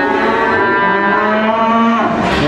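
Several cattle mooing, their long calls overlapping so that two or three run at once without a break.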